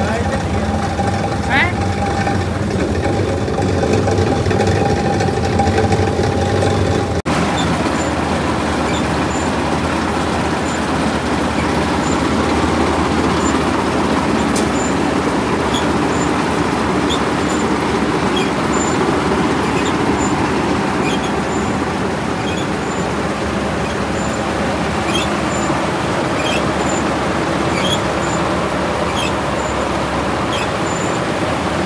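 Self-propelled combine harvester running: first its diesel engine runs steadily with a hum. About seven seconds in, it gives way to the denser, rougher din of the combine harvesting paddy, with faint light ticks about once a second.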